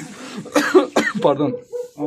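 A person coughing and clearing their throat, mixed with a few spoken sounds.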